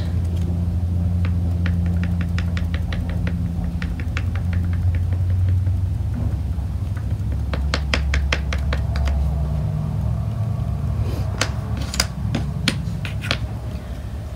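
A makeup sponge dabbing paint onto a small wooden leaf cutout: several runs of quick, light taps, about four a second, over a steady low hum.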